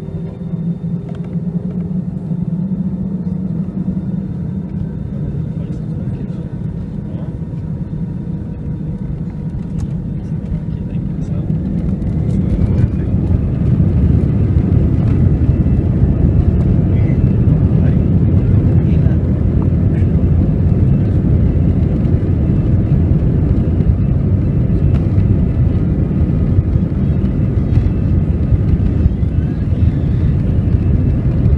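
Airbus A320 jet engines heard inside the cabin over the wing: a steady low hum at idle, then about twelve seconds in the engines spool up with a rising whine into a loud, steady roar of take-off thrust.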